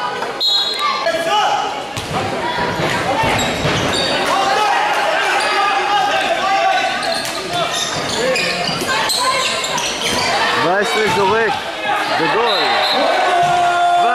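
Handball bouncing on an indoor court, with several voices calling and shouting over it in a large hall.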